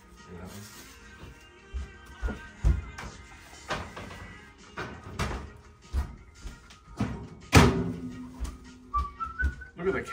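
Kitchen utensils knocking and tapping against a bowl and the table while sausage meat is spread onto pastry, a series of sharp knocks with the loudest clatter about seven and a half seconds in.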